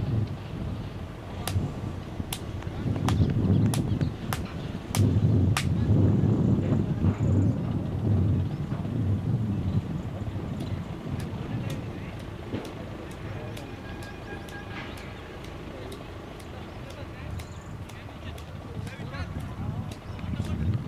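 Wind buffeting the microphone in gusts, strongest in the first half and easing later, with faint voices and a scattering of faint sharp ticks.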